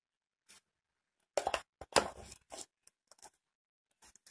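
Metal ladle clinking and scraping against the side of a metal pressure cooker as mashed tomato is spooned in: a quick cluster of clinks and scrapes starting about a second and a half in, then a few light taps.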